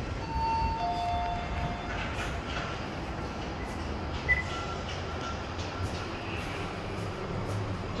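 Toshiba passenger lift's arrival chime: two tones, a higher note then a lower one, together about a second and a half long, over a steady low hum of the lift lobby. A short sharp blip comes about four seconds in.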